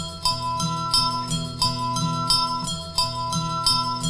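Instrumental passage of a live band: a repeating loop of ringing, bell-like plucked notes, about three a second, over a held low note.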